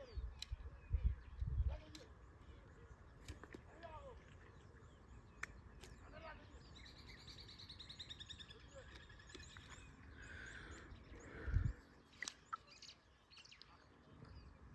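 Wild birds chirping and calling outdoors, with a rapid trill about halfway through. A few low thumps and sharp clicks come near the start and just before the end.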